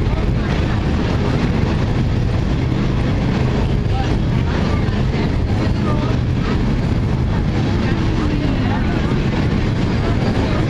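Freight train rolling steadily across a steel truss bridge: a continuous low rumble with no breaks.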